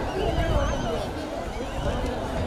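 Crowd of men shouting and calling over one another as a bull charges through a manjuvirattu field. A warbling whistle sounds above them for about the first second.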